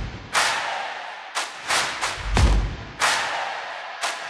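A run of five sharp hits, each fading out in a long hiss, with low thuds under some of them: impact sound effects.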